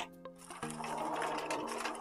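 Plastic packets rustling and sliding over a wooden desk as they are gathered by hand, starting about half a second in, over quiet background music with sustained notes.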